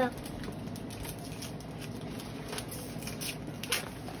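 Newspaper wrapping rustling and crinkling as it is unwrapped by hand, soft throughout with a few sharper crackles in the second half.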